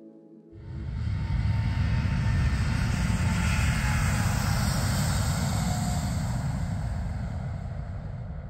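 Boeing 787 Dreamliner's jet engines at high power: a loud, deep roar that comes in suddenly about half a second in, swells over the next second and then slowly fades.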